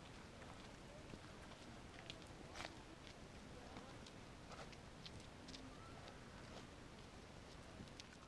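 Near silence: faint outdoor ambience with distant, indistinct voices and occasional soft clicks.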